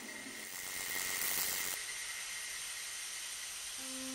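Steady hissing noise, as of smoke escaping from a crash-landed flying saucer, swelling briefly about a second in. Sustained electric piano notes come in near the end.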